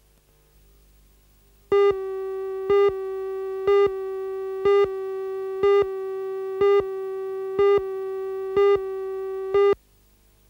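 Videotape countdown leader: a steady tone starts about two seconds in, with a short louder beep and click on each second as the numbers count down, nine counts in all. It cuts off suddenly just before the end.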